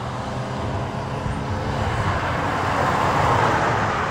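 1989 Dodge Dakota Shelby pickup's V8 driving by, a steady low engine rumble with tyre and road noise that grows louder to about three seconds in, then eases off.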